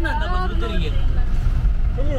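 Engine and road rumble heard inside the cab of a moving utility vehicle. A person talks over it during the first second.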